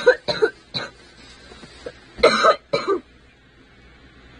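A young woman coughing: a few short coughs in the first second, then two louder harsh coughs a little past two seconds in. It is a lingering cough from an illness of about eighteen days that antibiotics have not cleared.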